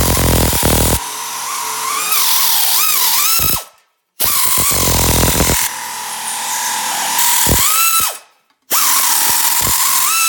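Central Pneumatic pneumatic air nibbler running in three bursts, its punch chewing through thin sheet steel with a rapid chatter under a high whine that sags and recovers as the cut loads it. The tool stops briefly about four seconds in and again near eight and a half seconds.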